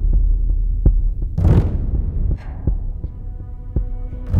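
Dark orchestral film-score cue: a deep droning rumble with a big swelling percussive hit about a second and a half in, and a held, sustained chord entering near the end.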